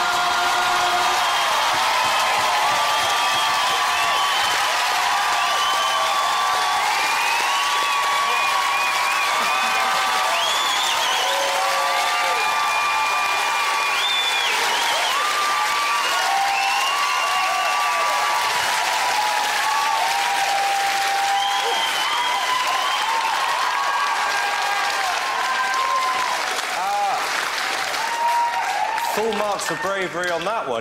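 Large studio audience applauding and cheering, loud and sustained, with many voices shouting over the clapping.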